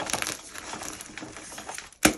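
Blocks of gym chalk crushed and crumbled between gloved hands over a wire rack: a continuous gritty crackle of many small crunches.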